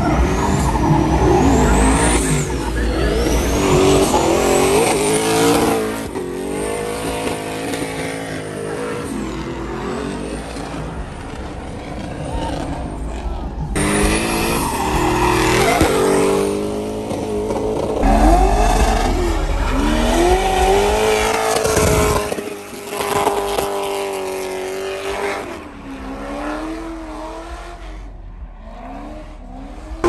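Drift cars sliding through a corner: engines revving up and down as the throttle is worked, with tyre squeal. Loudest in the first few seconds and again about eighteen seconds in, fading toward the end.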